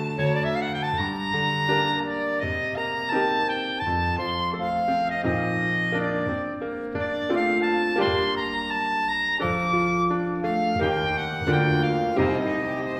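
A violin, clarinet and grand piano trio playing an arranged classical piece, with sustained melodic notes over piano chords. One rising glide comes near the start.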